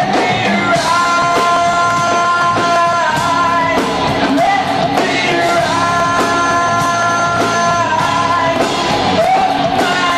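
Live rock band playing with a lead singer: drums, electric guitars and vocals, the voice holding long notes that bend between pitches over a steady drum beat.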